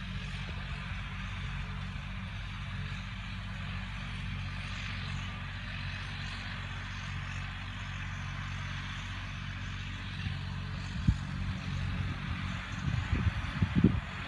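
John Deere 5405 tractor's engine running steadily under load while pulling a disc harrow across the field, heard at a distance as an even low hum. A few thumps come in near the end.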